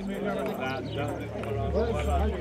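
Several men's voices talking at once, an overlapping chatter in which no single voice stands out.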